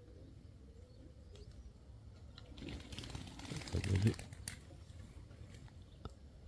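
A man's brief, low, wordless vocal sound with breath noise, loudest about four seconds in, over a faint background with a few light clicks.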